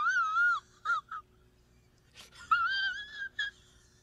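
A man's high-pitched, wavering whine in two bouts: a wobbling squeal at the start, two short squeaks, then after a pause a second, slightly rising whine.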